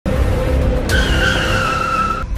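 Car tyres screeching under hard braking over a low engine rumble. The screech comes in about a second in, sliding slightly down in pitch.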